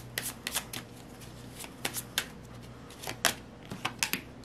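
A deck of tarot cards being shuffled and worked in the hand, with cards pulled out and laid down: an irregular string of crisp card flicks and snaps, the sharpest about three seconds in.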